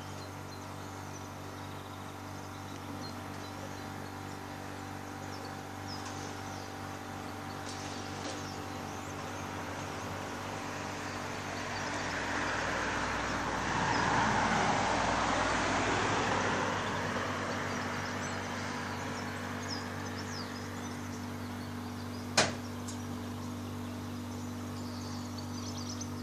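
A single car passing along the street below, building to its loudest about halfway through and then fading away, over a steady low hum. A sharp click sounds once near the end.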